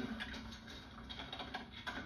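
Typing on a computer keyboard: a string of light key clicks over a faint steady hum.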